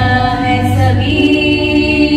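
A woman singing solo into a handheld microphone, holding long sustained notes and moving to a new note about a second in.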